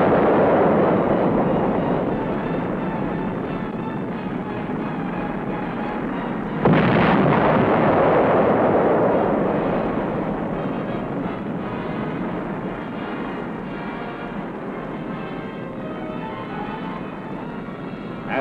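Demolition explosions: the rumble of one big blast is dying away at the start, then a second blast strikes sharply about seven seconds in and fades slowly into a long rumble.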